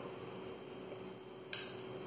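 An egg being cracked into a clear plastic cup: one sharp click about one and a half seconds in, over a faint steady hum.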